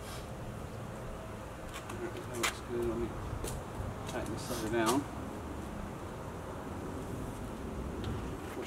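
A few sharp clicks from bolts and hardware being handled on a steel rolling tool cabinet, with brief low voices between them over a steady low hum.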